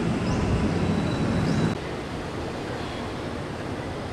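Steady outdoor background noise, a low rumbling hiss with no music or speech, dropping noticeably in level a little under two seconds in.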